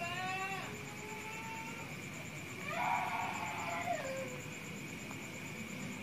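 A cat meowing twice: a short call right at the start and a longer call, falling in pitch, about three seconds in. A faint steady high whine runs underneath.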